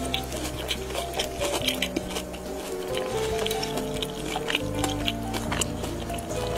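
Background music of steady held notes over close-miked chewing of a crisp deep-fried breaded drumstick, heard as a run of short crunchy clicks.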